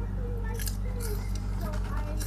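Close-miked ASMR eating sounds: sharp, crisp crunches and mouth clicks of a crunchy snack being chewed right at a small handheld microphone, several times over, above a steady low electrical hum.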